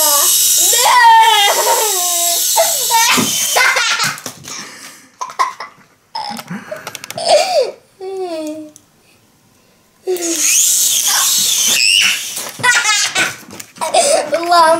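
Small electric motors spinning the twin rotors of a flying Minion toy helicopter: a steady high whir for the first few seconds, stopping, then starting again about ten seconds in. A child laughs loudly over and between the runs.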